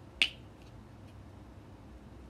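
A single sharp plastic click about a quarter second in: the flip-top cap of a squeeze tube of body lotion snapping open.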